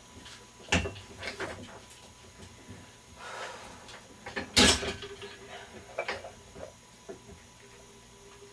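Bench-press setup: knocks and rustles as a person settles onto a padded weight bench, then a sharp metal clank about four and a half seconds in as the 85-pound barbell is lifted off its rack, followed by a few lighter knocks.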